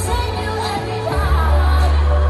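Live pop song over a stadium PA: a woman singing into a microphone over a heavy, steady bass line that gets heavier about a second in.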